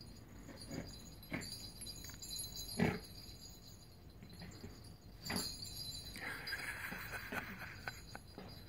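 Small poodle nosing and pawing at a soft plush clamshell toy: faint jingling, a few soft knocks, and a second or so of rustling near the end.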